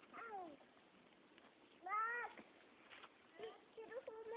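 A young child's voice making two short drawn-out calls: the first falls in pitch, and the second, louder one, about two seconds in, rises and then falls.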